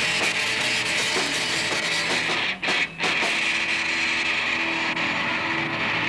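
A rock band playing live, with electric guitar, bass and drums. The sound cuts out twice very briefly about halfway through, then a guitar note is held under the band.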